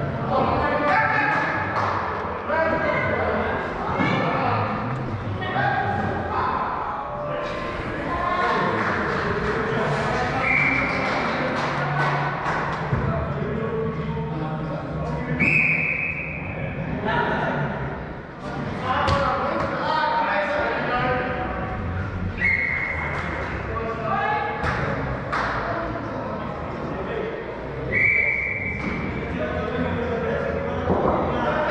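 Indoor cricket in a large netted hall: players' voices calling and chatting, with scattered sharp thuds of the ball striking bat, pitch and netting. A short, steady high beep sounds four times.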